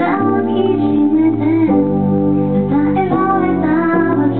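A woman singing a slow song with held notes, accompanying herself on a keyboard, heard live from the audience.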